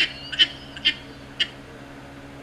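A man laughing in four short, high-pitched bursts that come further apart and stop about a second and a half in.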